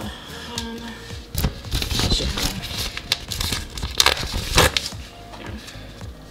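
Paper packaging crinkling and rustling in a run of bursts as it is handled, starting about a second and a half in and easing off near the end, over background music.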